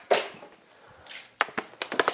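A hockey stick snapping a puck off a plastic shooting pad: one sharp crack at the start that dies away over about half a second. In the second half come several quicker, lighter clicks and taps of stick and pucks on the pad.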